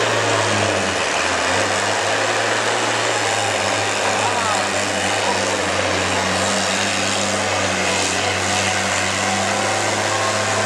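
Diesel engine of a cabover semi tractor running at low, steady revs, a deep even drone that shifts slightly in pitch about a second in.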